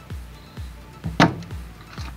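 A spring-loaded desoldering pump fires once with a sharp snap a little over a second in, sucking excess solder off a circuit-board trace before it is cut, over background music.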